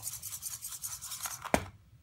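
ROBOTIS-MINI humanoid robot walking in fine play sand: its servos whir and its feet scrape in quick, even pulses. About a second and a half in comes a single sharp thud as the robot falls over.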